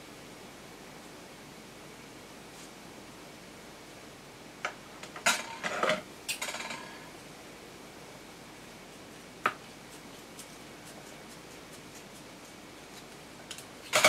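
Metal tweezers and scissors handled while trimming a folded satin petal: a cluster of light clicks and snips about five to seven seconds in, then a single sharp click near ten seconds, over a faint steady room hum.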